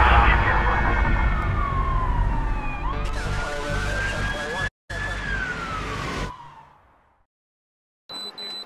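A police siren wailing, its pitch sliding slowly down, then up and down again, with a brief dropout about five seconds in. It fades out about six and a half seconds in.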